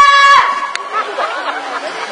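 A shrill cry held on one high note, cut off about half a second in. A short click follows, then overlapping voices chattering.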